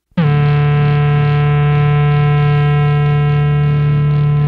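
Sludge metal: a heavily distorted electric guitar chord strikes suddenly out of silence just after the start and rings on, sustained and loud.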